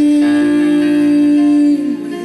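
A man's voice holds one long sung note over instrumental accompaniment, the note sliding down near the end.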